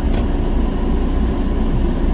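Car cabin noise while driving: a steady low engine and road rumble, with the air conditioning blowing at full power.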